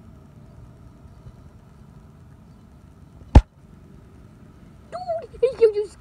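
Low, steady outdoor background noise with a faint hum, broken a little over three seconds in by a single sharp click. A high-pitched voice starts near the end.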